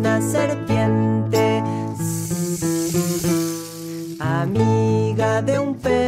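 Children's yoga song: acoustic guitar strummed under a singing voice, with a long drawn-out hiss about two seconds in, the snake's 'sss' of the song.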